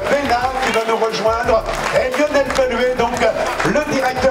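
Announcer speaking over a public-address system, with music underneath.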